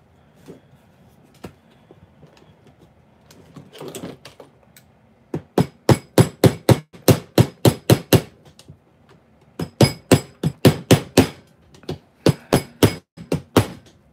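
Rapid hammer taps, about four to five a second, in three runs, driving a tight-fitting 3D-printed plastic part into place.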